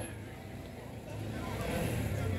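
Quiet outdoor street background: a low steady rumble that grows a little louder about a second in, with faint distant voices.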